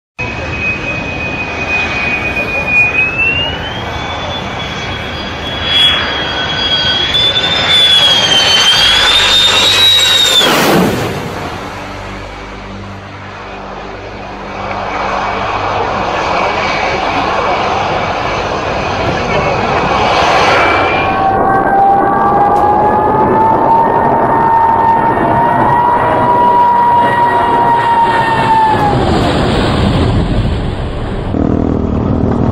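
Jet aircraft engines in several clips. A high engine whine climbs in pitch and then drops sharply as a low jet passes about ten seconds in. Later a jet's whine and roar hold steady at a lower pitch before fading near the end.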